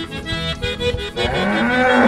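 A cow mooing once over accordion music. The moo starts about a second in, rises in pitch and lasts under a second.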